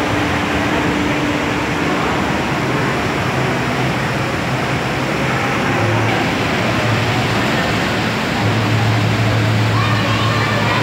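Steady wash of indoor aquarium-hall background noise with a low hum, growing stronger from about six seconds in and more so near the end, and distant voices in it.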